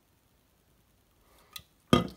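Near silence, then a faint brief rustle about one and a half seconds in and a single sharp knock near the end, as the aluminium drink can is handled and turned in the hand.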